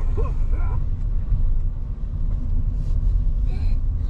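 Steady low rumble of a car driving slowly along a gravel road, heard from inside the cabin.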